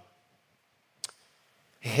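Near silence, broken by one brief click about a second in. A man's speaking voice starts just before the end.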